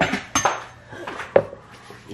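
Kitchen utensils and containers being handled, clinking and knocking: a short clink with a brief high ring about a third of a second in, then a sharper knock a little over a second in.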